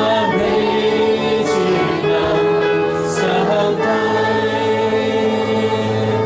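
Worship song: a man's voice singing long held notes with other voices joining, over a sustained electronic keyboard accompaniment.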